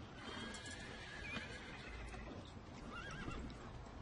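A horse whinnying faintly: a short wavering call about a second in, then a longer wavering call about three seconds in.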